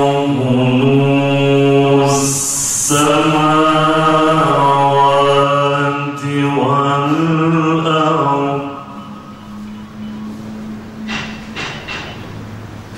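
A man's melodic Quran recitation through a microphone and sound system: long, drawn-out sung phrases with a quick breath about two seconds in. The voice stops about nine seconds in, leaving a faint steady hum and a few small clicks.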